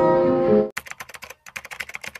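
An acoustic guitar song with a sung voice that cuts off abruptly under a second in. Rapid computer-keyboard typing clicks follow, a typewriter sound effect for on-screen text, in two quick runs with a short break between them.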